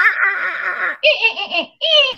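A woman imitating a dolphin's squeaky call in a high, strained voice: two squeals, the second higher, with another starting near the end, mixed with laughter. It is a struggling imitation that 'sounded like a dolphin that didn't feel too good'.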